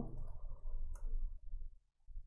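A few clicks from typing on a computer keyboard, with one sharper click about a second in, over a low hum that drops away near the end.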